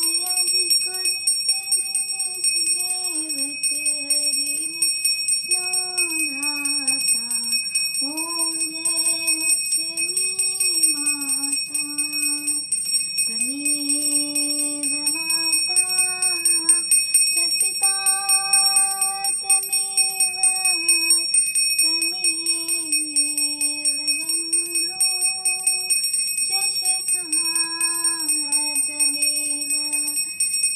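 A devotional aarti hymn sung in a woman's voice, with a puja hand bell rung rapidly and without pause throughout.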